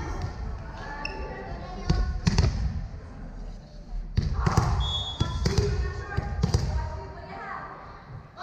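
A volleyball bouncing several times on a hardwood gym floor, each bounce a sharp smack that rings in the big hall. Voices and chatter from players and spectators run underneath.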